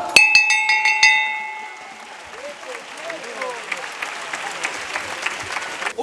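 A processional throne's bell struck in several quick strokes about a second in, its ringing dying away over the next second: the signal to the bearers to set the throne down. Applause follows from the watching crowd.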